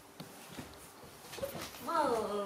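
Baby monkey giving a short call near the end that falls in pitch and then levels off, after faint taps and rustles of small bodies moving on a bed.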